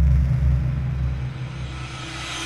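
Deep cinematic rumble from an animated logo intro sting, slowly fading, with a rising hiss building toward the end.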